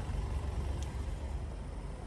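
Low steady rumble with a faint hiss and no distinct event: background room noise.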